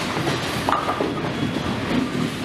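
Bowling ball rolling down a wooden lane with a steady rumble, amid the noise of a busy bowling alley, with a couple of sharp knocks partway through.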